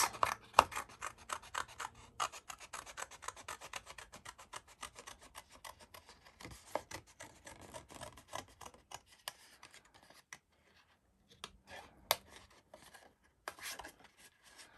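Small scissors snipping through thin card in many short, quick cuts, pausing briefly about ten seconds in before a few more snips.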